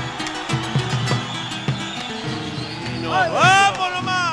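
Live Argentine folk music: acoustic guitars strumming and plucking over a double bass, with the low beats of a bombo legüero drum. About three seconds in, the lead singer's voice comes in with a loud, sliding sung note.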